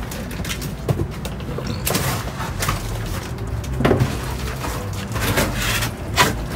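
Cardboard produce boxes and plastic bags being lifted and shifted in a dumpster: a string of rustles and knocks, about one a second, over a steady low hum.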